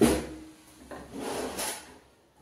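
A pull-out steel basket drawer in a kitchen cabinet sliding on its runners, with a rubbing scrape. It starts with a sudden clunk that fades, and a second slide comes about a second in.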